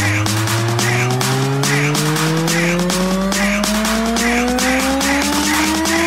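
Electro house club music in a build-up: a pitched sweep rises slowly over steady hi-hats and a clap a little more than once a second, with the bass dropped out.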